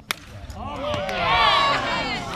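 A plastic wiffle ball bat cracks once against a wiffle ball. Several people then shout and cheer together, their voices swelling to a peak about a second and a half in.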